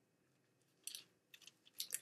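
Near silence broken by a few faint, short rustles of thin Bible pages being turned, about a second in and again near the end.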